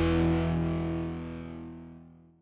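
The last held chord of a rock song on distorted electric guitar, ringing out and fading steadily away to nothing.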